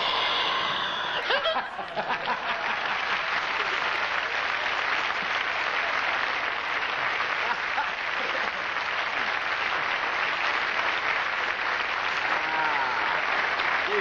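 A studio audience applauding and laughing, one long unbroken round of applause. A man's voice comes in near the end.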